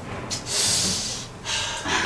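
A man's long breathy exhale starting about half a second in, followed by a shorter breath near the end. It is a voice actor imitating the small breath noises a film actor makes on screen.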